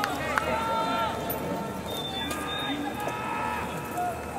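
Several voices calling out across a baseball ground, with drawn-out shouts overlapping one another, and one sharp click about half a second in.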